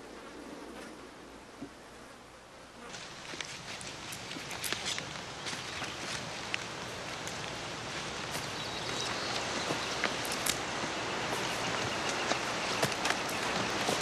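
Rustling and crackling in dry leaf litter and brush, full of small sharp snaps. It is faint at first, swells about three seconds in, and grows slowly louder after that.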